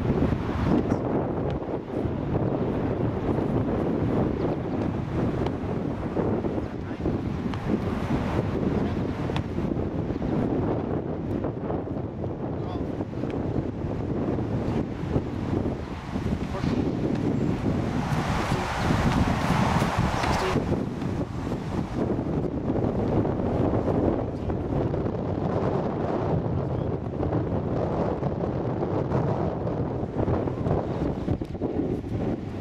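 Wind buffeting the microphone: a steady, rough low rumble throughout, with a brighter rush of noise lasting about two seconds a little past the middle.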